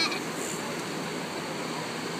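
Steady wash of surf and wind noise at the shoreline, with no distinct events.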